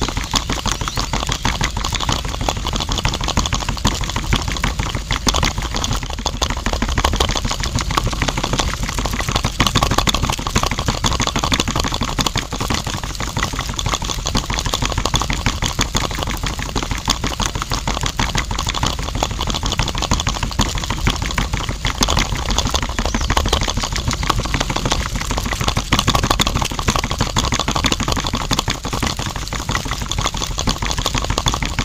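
Small electric toy motor mounted under a tin can on a homemade miniature tractor trailer, running steadily with a fast rattling buzz.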